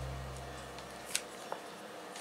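Two light clicks from the Ultra Pod II camera mount being handled and set to a right angle on a hiking pole, over a low hum that fades out in the first second.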